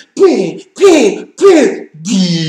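A man's voice making three short wordless groans in a row, about two-thirds of a second apart, in exasperated disgust.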